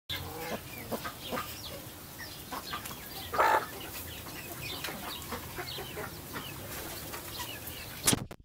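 Chickens clucking in many short, scattered calls, with one louder sound about three and a half seconds in.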